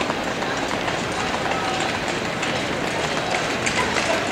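Steady crowd noise in a large indoor ice hall: spectators cheering and shouting for a skater.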